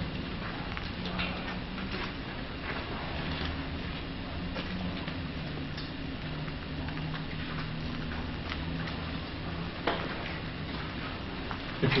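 Quiet steady hiss with a low hum, sprinkled with faint scattered clicks and crackles, and one sharper click about ten seconds in.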